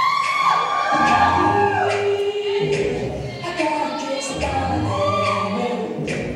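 Music with layered singing voices in a choir-like, mostly a cappella style, holding long notes that slide in pitch.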